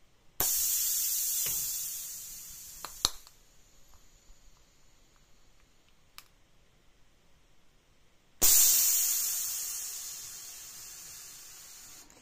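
Compressed air hissing through the pneumatic valve of a homemade injection molding machine as its injection cylinder is worked. The machine runs on about two bar of air pressure. A sudden hiss about half a second in fades over a few seconds, then comes a sharp click near three seconds. A second sudden hiss at about eight and a half seconds fades out.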